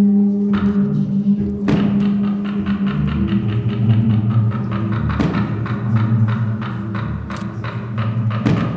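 Improvised live music: a held low note for the first couple of seconds, then a steady run of drum and percussion strikes, about four a second, with low bass notes underneath.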